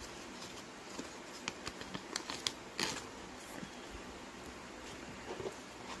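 Pokémon trading cards being handled and set down on a table: a scatter of light clicks and taps, most of them in the second and third seconds.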